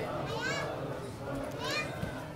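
Background voices with two short high-pitched calls that rise in pitch, one about half a second in and one near the end.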